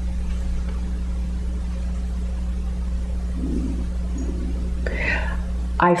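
Steady low hum of room tone, with a faint low murmur about halfway through and a short intake of breath near the end, just before a woman starts speaking again.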